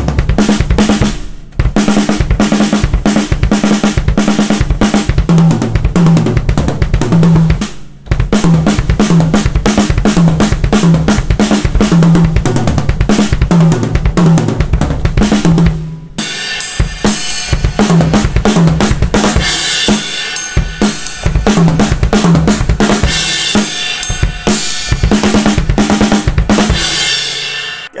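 Acoustic drum kit played fast: single-pedal bass drum strokes mixed with quick groups of hand strokes around the toms and snare, with brief breaks about one and a half and eight seconds in. From about halfway through, cymbals ring over the drumming.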